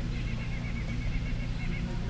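A bird calling: a run of short, even, high notes, about seven a second, that stops near the end, over a steady low rumble.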